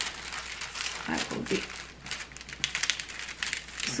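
Crinkling and rustling of plastic film and a stiff canvas as hands press and smooth it flat, a run of small crackles that thickens in the second half.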